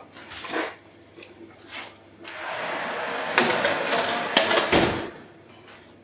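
A baking tray of meringues put into a preheated oven: a steady rush of noise while the oven door is open, a couple of clicks as the tray slides in, and the oven door shut with a loud thump near the end.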